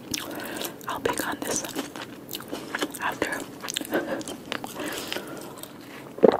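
Close-miked chewing of grilled tilapia and vegetables: wet mouth smacks and clicks with many short crackles, in an uneven run.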